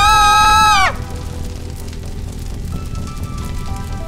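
A loud, high, wavering shriek that drops in pitch and cuts off about a second in, over a low, droning horror-film score that carries on with faint held tones.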